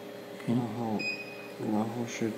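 A single short electronic beep, about half a second long, from a LongXing computerized flat knitting machine's touchscreen control panel as a key is pressed, with a man's voice around it.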